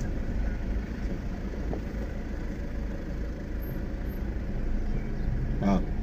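Steady low rumble of a car's engine and road noise heard from inside the cabin while moving slowly through congested traffic.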